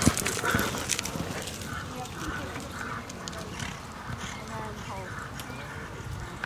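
Ridden horse cantering on a dirt arena, its hoofbeats loudest and sharpest at first as it passes close, then fading as it moves away. Faint voices are heard in the background.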